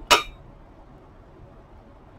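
A single short clink of small china pieces knocked together while being handled, just at the start, followed by faint room noise.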